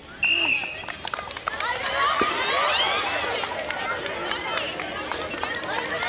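A short, shrill whistle blast just after the start, signalling the start of a race, followed from about a second and a half in by many high voices shouting and cheering over one another.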